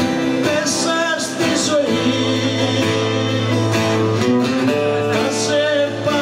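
A live band playing a Greek folk-rock song, with acoustic guitar, bass and drums with cymbal strokes, and a woman singing over them.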